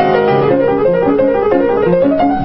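Kawai KG2 5'10" baby grand piano, recently restrung, being played in a continuous flowing passage: many overlapping notes in the middle register over held bass notes.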